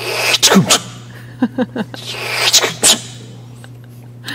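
A man imitating a guillotine blade with his mouth: two hissing swooshes, the first at the start and the second about two and a half seconds in, each ending in a sharp cut-off, with a few short clicks between them.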